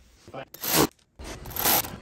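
Stiff plastic radiator air duct crunching and scraping twice as it is pushed and flexed into place, each burst about half a second long.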